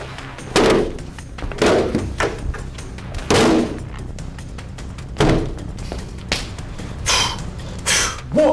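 Plastic aerobic step platform and risers knocking and thudding on a wooden floor as they are handled and set down, about six separate thuds spread over several seconds.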